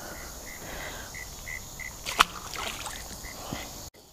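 Insects chirping in a steady, faint pulse about three times a second, with a single sharp knock about halfway through.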